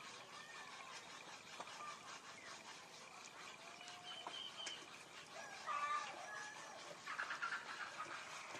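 Faint outdoor ambience with scattered short bird chirps and calls. The loudest is a cluster of calls just before six seconds in.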